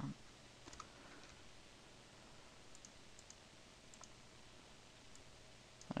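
Faint, scattered computer mouse clicks, a handful spread across the few seconds, over a low steady hum.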